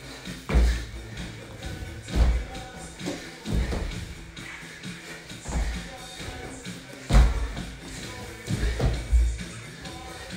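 Music playing throughout, with repeated heavy thuds every second or two as a person doing burpees drops to and jumps off a laminate floor.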